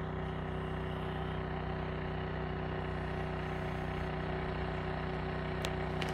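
An engine running steadily at idle, a constant low drone with an even hum. A single short click comes near the end.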